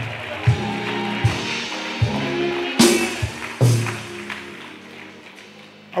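Church music playing sustained chords with a few sharp hits, under congregation clapping and praise. The sound dies away toward the end.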